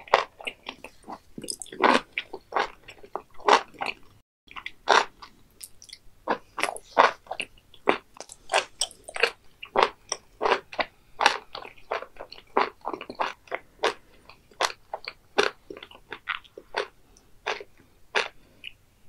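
Close-miked chewing of raw beef offal with the mouth closed: a steady run of short, wet, crunchy chews at about two a second, with a brief break about four seconds in.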